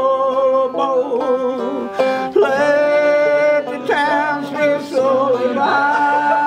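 Banjo strummed under singing of a slow folk song, with long held notes.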